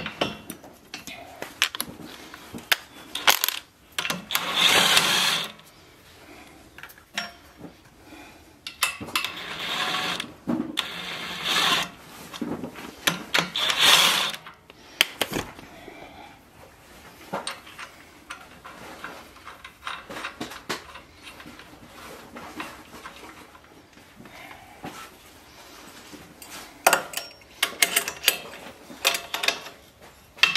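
Scattered metallic clinks and clicks of bolts, nuts and washers being handled and fitted by hand against a steel tractor grill-guard mount. Several louder noisy bursts about a second long come in the first half, and a closer run of clicks comes near the end.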